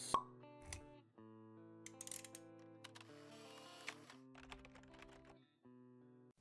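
Faint animated-logo intro jingle: one sharp click just after the start, then soft held electronic notes that step from chord to chord, with a few light clicks among them.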